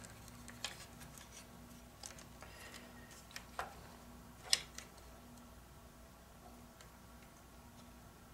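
Faint, scattered clicks and light knocks of a hard drive's plastic caddy and its data and power cable connectors being handled and plugged in, the sharpest click about four and a half seconds in. A faint steady low hum runs underneath.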